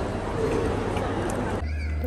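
Food-court crowd background noise with a toddler's short high-pitched vocal sound about half a second in. The background cuts off abruptly near the end.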